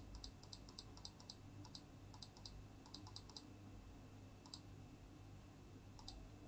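Faint computer mouse clicks in quick runs for the first three seconds or so, then once more later, over a quiet steady low hum.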